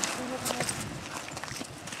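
Footsteps of several hikers crunching along a rocky mountain trail, irregular and uneven, with faint voices in the background.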